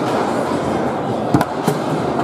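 Two sharp cracks of a table-soccer ball being struck by the hard plastic figures on the rods, about a second and a half in, the second a moment after the first. Under them runs a steady din of voices and play from the tournament hall.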